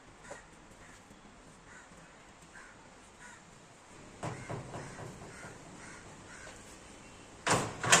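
A hand-lever sheet metal folding machine being worked, with a few clanks about four seconds in as the sheet is folded, and two loud sharp knocks near the end. Crows caw faintly in the background.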